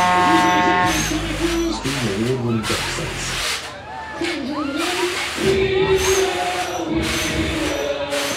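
Loud fairground ride music with voices shouting and singing over it. A held chord in the music cuts off about a second in, and a hiss swells and fades roughly every second.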